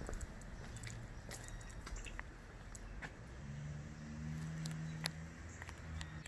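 Footsteps squishing and crunching over wet grass, with scattered short clicks; about halfway through, a low steady hum starts and runs on.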